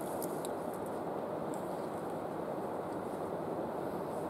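Steady low rushing outdoor background noise at an even level, with a few faint ticks in the first second or two.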